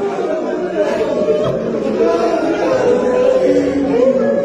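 Many men's voices sounding at once in an echoing tiled room, overlapping, with long held drawn-out notes.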